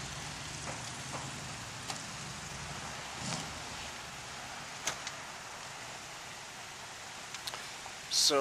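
Idling car engine, a low steady hum under general street noise that fades about three and a half seconds in, with a few faint clicks.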